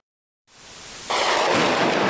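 A short silence, then an explosion from a shell striking an apartment building: noise swells and breaks into a loud blast about a second in, its rumble dying away slowly.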